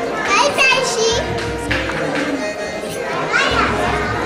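Young children's high-pitched voices calling out over adults' chatter, with music playing in the background.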